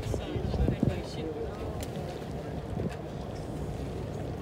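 Indistinct voices in the first second over a steady low rumble on a boat deck: the boat's engine and wind on the microphone.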